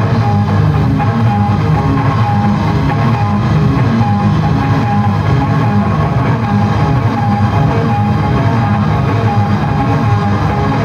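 Live blues-rock trio playing an instrumental passage without vocals: electric guitar with held, repeated notes over bass guitar and drum kit.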